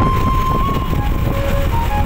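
Wind and road noise of a moving motorcycle, dense and low, with background music laid over it: a thin, held melody note that fades about halfway through.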